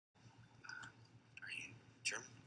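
Faint, indistinct speech, a few quiet voice sounds over a low steady hum.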